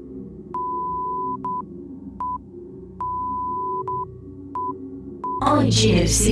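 High, single-pitched electronic beeps in a pattern of long and short tones, like Morse code, over a soft low sustained music bed. Near the end a loud burst of music with a voice cuts in.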